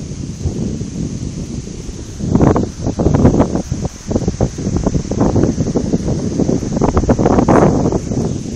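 Rustling, buffeting noise on a phone's microphone from wind and from the phone being handled close up, with louder bursts about two and a half seconds in and again near seven seconds in.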